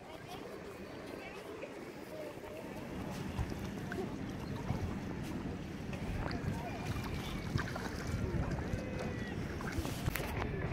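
Outdoor swimming-lake ambience: wind rumbling on the microphone under distant voices of people and children in the water.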